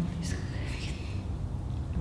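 Soft whispered speech in the first second, over a steady low room rumble.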